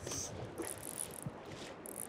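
Fly reel's click drag buzzing as a hooked Atlantic salmon pulls line off it, a faint steady rattle with the river's flow behind it.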